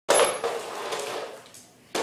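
Kids' plastic toy piano clattering on a tile floor as a dog knocks it about with its nose. There is a sharp clatter at the start that fades over about a second and a half, then another just at the end.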